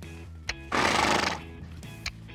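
A horse snorting, one loud breathy blow through the nostrils of just under a second, preceded by a short click.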